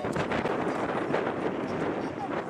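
Jet engine noise of a Boeing 767-300ER taxiing at a distance, heard as a steady rush mixed with wind buffeting the microphone.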